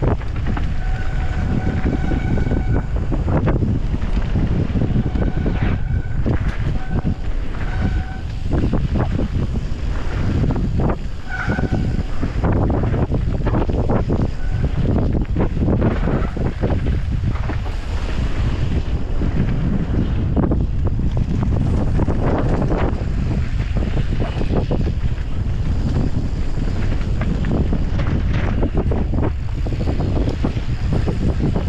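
Wind rushing over the microphone while a mountain bike rolls fast down a loose gravel trail, the tyres crunching and the bike rattling over stones. There are a few short squealing tones in the first dozen seconds.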